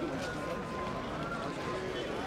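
People's voices talking over the steady background bustle of a busy street market.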